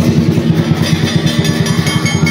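Lion dance percussion band playing: a big drum beaten in a fast, steady roll with cymbals clashing in time, the clashes growing stronger about a second in.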